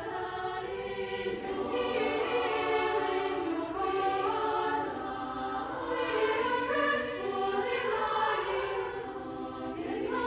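Soprano-alto choir of many girls' and women's voices singing sustained, shifting chords, the phrases swelling and easing.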